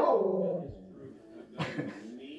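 A pet dog vocalizing back at its owner: a loud, drawn-out call that fades over about the first second, followed by a shorter sound near the end.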